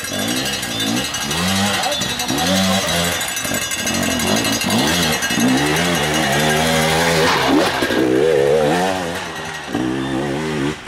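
Enduro dirt bike engine revving up and down in repeated bursts as it climbs a rocky creek bed under load, with one sharp high rev about seven seconds in.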